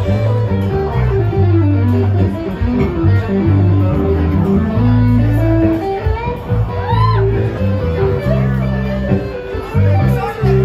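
Live band playing an instrumental passage with no vocals: electric guitar and bass guitar over a steady low bass line. There is a bent guitar note about seven seconds in.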